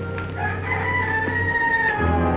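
A rooster crowing once: a single drawn-out call of about a second and a half, over a low orchestral film score.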